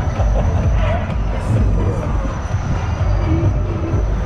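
Loud fairground ride music over a heavy, uneven low rumble from a spinning waltzer-type ride car running on its moving platform.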